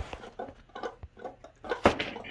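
Small electric guitar being picked in short, scattered, muted plucks that barely ring, with one louder pluck near the end. The strings are being held down too tight, which deadens the notes.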